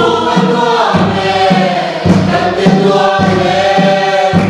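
A mixed congregation singing a hymn together, led by a woman's voice through a microphone. A large barrel drum keeps a steady beat a little under twice a second.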